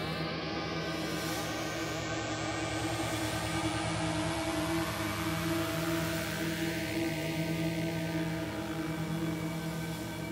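Eerie electronic drone of many sustained tones, with a high whooshing sweep rising in pitch over the first few seconds: sound design depicting a hallucination of shooting colours and lights.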